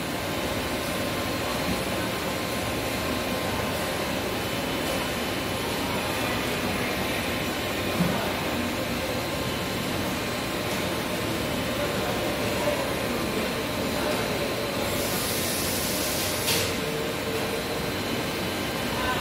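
Hydraulic pump unit of a homemade one-tonne cargo lift running steadily while the platform rises: a continuous even hum with hiss. There is a short knock about eight seconds in and a stronger hiss for a second or so near the end.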